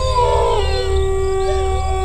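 Eerie, sustained howl-like sound effect: several held tones, a couple of them stepping down in pitch about half a second in, with faint wavering glides above, over a steady low drone.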